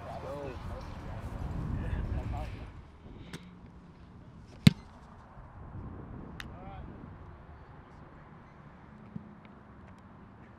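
A punter's foot striking an American football on a punt: one sharp, loud smack about halfway through, with faint distant voices around it.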